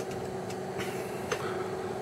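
Steady hum of equipment cooling fans, with a faint click about a second and a quarter in.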